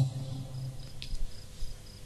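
A pause in the preaching: hall room tone, with the preacher's voice dying away at the start and a faint high-pitched chirp repeating about three times a second. A single small click comes about a second in.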